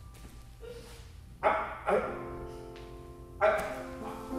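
Vocal sound effects from a performer: a sudden vocal burst about a second and a half in, then one steady held note lasting about a second and a half, and another burst near the end.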